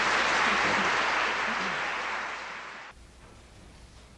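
Audience applauding, fading and then cut off abruptly about three seconds in.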